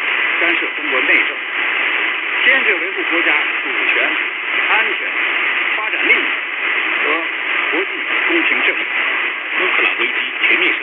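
Distant AM broadcast on 585 kHz heard on a CS-106 radio through its internal ferrite rod antenna: a voice talking, muffled and half-buried in steady static, with the sound cut off above about 4 kHz.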